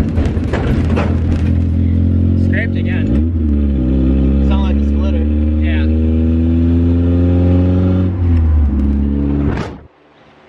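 Mazda Miata's four-cylinder engine pulling through the gears: its note climbs steadily, drops at a gear change about three seconds in, climbs again, and changes once more near eight seconds before cutting off sharply.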